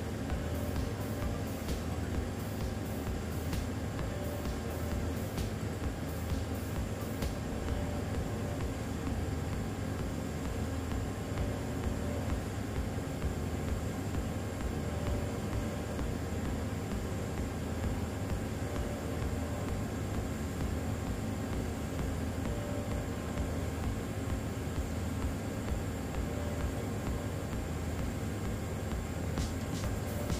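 TIG welding arc running steadily with an even hum during a keyhole-technique root pass joining carbon steel to stainless steel, set to a slightly lower amperage for the keyhole.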